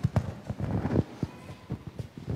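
A quick, irregular run of knocks and thumps, busiest about a second in.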